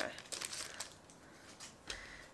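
Foil wrapper of a Pokémon booster pack crinkling as the cards are pulled out: several quick crackles in the first second, a quieter spell, then one more crackle near the end.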